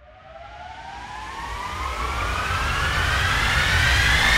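A riser sound effect: a whooshing noise swells steadily louder while a tone glides slowly upward in pitch.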